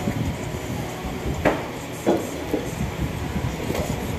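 Close handling noise at a shop counter as a leather wallet is handled: a low, steady rumble with two sharp knocks about one and a half and two seconds in.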